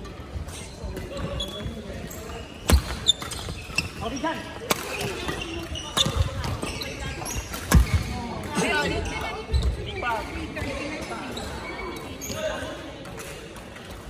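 Badminton rally: sharp cracks of rackets striking the shuttlecock every second or two, with short squeaks of court shoes on the wooden floor, in a large sports hall.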